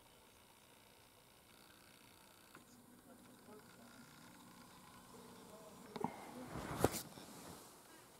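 Faint steady hum, then about six seconds in a brief rustle with a few sharp clicks as a handheld camera is handled and swung round.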